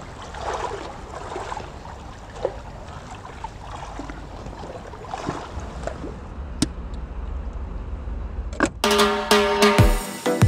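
Soft ambient noise with a low hum and a few faint clicks, then music cuts in suddenly close to the end, with held tones and a drum beat.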